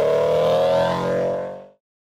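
Car engine revving up, its pitch rising steadily before it fades out about a second and a half in.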